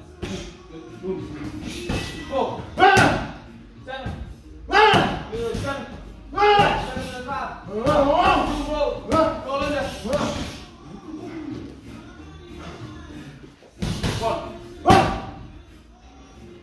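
Boxing gloves landing irregular punches on pads and a heavy bag, each a sharp slam, with the loudest hits about 3, 5 and 15 seconds in. Voices and background music run under the hits.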